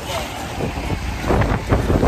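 Gusty wind buffeting the microphone, a low rumble that rises and falls.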